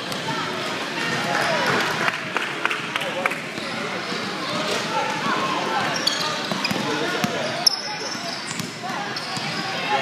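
Basketball bouncing on a hardwood gym floor during play, a string of short bounces, with the voices of players and spectators around it and a sharp knock near the end.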